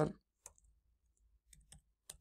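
Sparse, faint computer-keyboard key clicks as a web address is typed: one click about half a second in, then a few lighter ones near the end.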